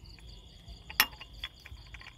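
Crickets chirring steadily, with one sharp click about a second in and a few lighter clicks after it, as a small metal coil spring is fitted onto the plastic parts of a toy tractor's hitch.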